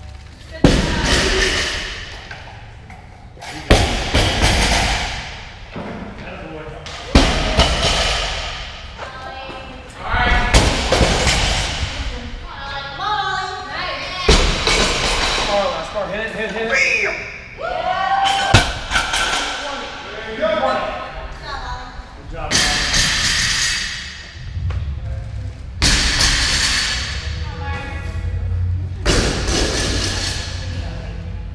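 Loaded barbells set down or dropped onto a rubber gym floor after deadlifts: a heavy thud every three to four seconds, each ringing on in the large hall. Voices and music are in the background.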